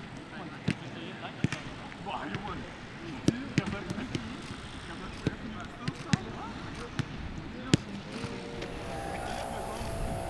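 A football being kicked and headed between players: sharp, separate thuds at irregular intervals, about one or two a second, with voices calling in the background.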